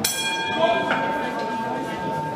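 Boxing ring bell struck once to start the round, its metallic tone ringing on and slowly fading, the higher overtones dying away first.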